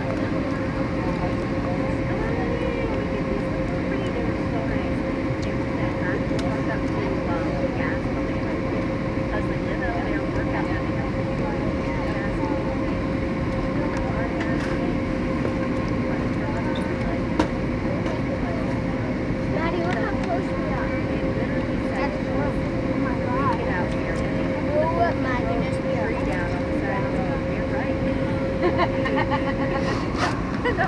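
Steady cabin noise of an Airbus A321 airliner descending to land: the even rush of its engines and the air, with a constant hum running through it.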